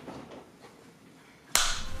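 Quiet room tone, then a wooden film clapperboard snapping shut with one sharp clack about one and a half seconds in, after which the room is noisier.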